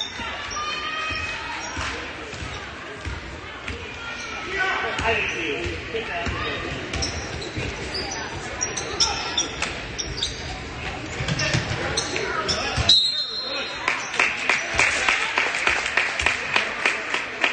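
Basketball being bounced on a hardwood gym floor during play, with short sneaker squeaks and voices from players and spectators. Near the end the bounces come in a steady run, about two a second.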